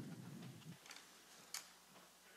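Near silence in a council chamber. A low rumble dies away in the first moment, then a few faint clicks and taps follow, the sharpest about one and a half seconds in.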